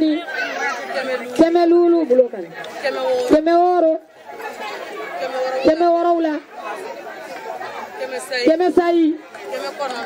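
A woman's voice over a PA microphone, calling out in drawn-out, chanted phrases that hold steady pitches, with crowd chatter underneath.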